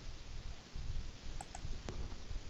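Three faint computer mouse clicks, two close together about one and a half seconds in and a sharper one just after, over the steady hiss and low hum of an open call microphone.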